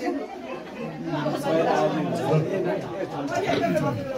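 Many people talking at once: overlapping conversation and chatter in a crowded room.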